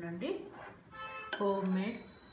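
A metal spoon clinks once against a small glass bowl of thick homemade condensed milk, a little over a second in, while it is scooped and stirred.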